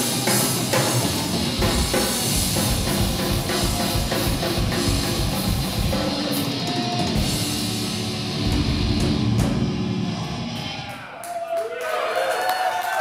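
Live heavy metal band playing: distorted electric guitars over a fast, busy drum kit. The song ends abruptly about eleven seconds in, and voices follow.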